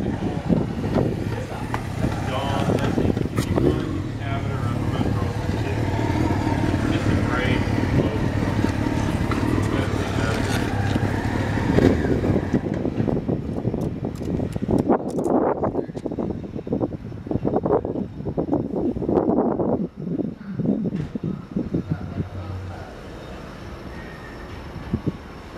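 Indistinct voices over a steady low hum. The hum stops about halfway through, and the rest is quieter, with a few short clicks.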